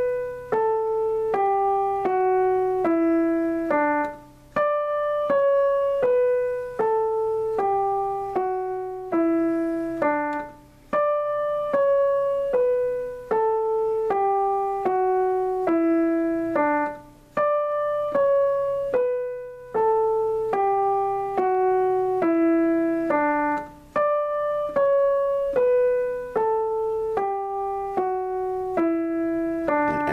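Digital piano playing the D major scale one note at a time with the right hand, in even, steady notes, running through the same octave several times over.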